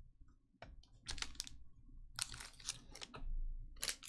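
Trading cards being picked up and handled on a table mat: irregular clusters of short clicks and scrapes.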